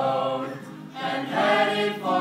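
A small mixed group of men and women singing a song together, one phrase ending about half a second in and the next opening on a held note, with an acoustic guitar strummed along.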